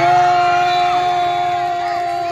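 A long drawn-out shout from a spectator or announcer, held on one steady note for about two and a half seconds as a shot goes in on goal, with crowd noise beneath.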